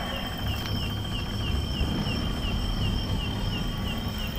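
Insect chirping in a steady high trill that pulses about four times a second, over a low rumble.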